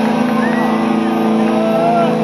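Live metal band's distorted electric guitars holding one sustained chord, a loud steady drone, with a few high sliding tones over it.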